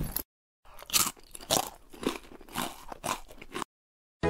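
Crunching, like something hard being chewed, in about six loud crunches roughly half a second apart, after a brief noise at the start.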